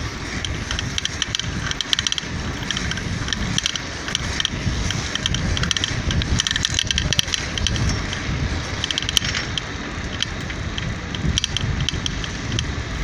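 Bicycle riding along a road: wind rumbling on the microphone, with repeated bursts of light metallic rattling and ticking from the bike.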